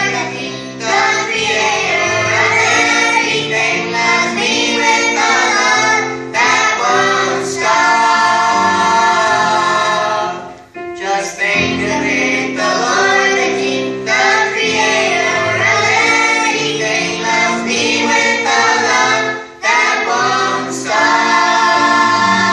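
A group of children and teenagers singing a gospel song together through handheld microphones, with short breaks between phrases about halfway through and near the end.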